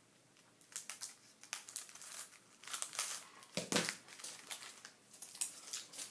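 Clear plastic sticker packaging crinkling and rustling as it is handled, in irregular bursts of crackles. One fuller rustle comes about three and a half seconds in.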